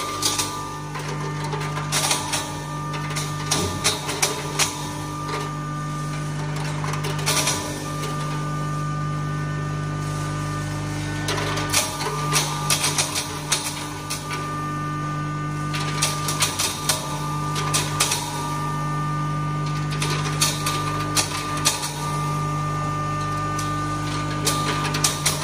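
A 5 HP single-phase, double-chamber turmeric (haldi) grinder running with a steady hum, while pieces of dried turmeric fed into its hopper crack and rattle in the grinding chamber with many irregular sharp clicks.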